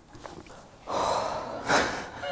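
A woman blowing out a long, heavy breath about a second in, then a short sharp breath near the end.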